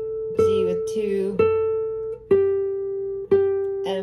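Nylon-string classical guitar playing single notes of a descending E minor scale in seventh position: four plucked notes about a second apart, each left to ring, stepping down in pitch halfway through.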